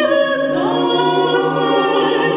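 Mixed choir singing a cappella in sustained chords, the voices sliding up into a new chord about half a second in.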